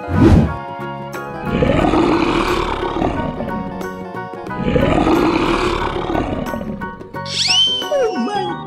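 Two long big-cat roar sound effects over cartoon background music, each about two seconds, the first starting about a second and a half in and the second around four and a half seconds in. A short low boom opens it, and a brief high whistling sweep comes near the end.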